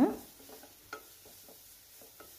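Spatula scraping and tapping in a nonstick pan as grated carrot is sautéed in ghee, with a faint sizzle underneath; one sharper tap about a second in.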